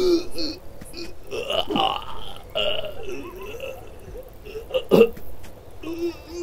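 A cartoon character's wordless voice: a run of gibberish vocal sounds with gliding pitch, and a sharp louder sound about five seconds in.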